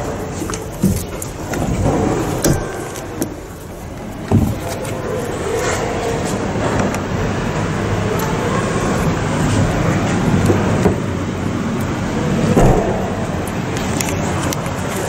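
Knocks and clicks of a car's folding third-row seat being handled, the loudest just after four seconds. Then a steady background noise runs on, with a couple more knocks near the end.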